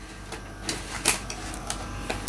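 Fresh banana leaves being pressed and folded into a stainless-steel pot, crackling and crinkling in irregular crisp snaps against the metal, a few per second.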